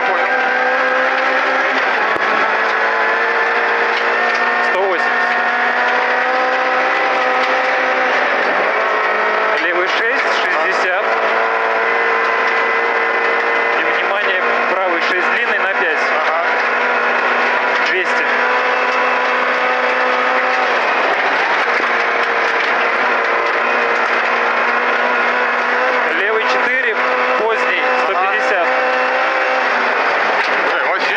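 Lada VAZ 2108 rally car's four-cylinder engine running hard at high revs, heard from inside the cabin over tyre and gravel road noise. The engine pitch holds fairly steady, with slight rises and dips.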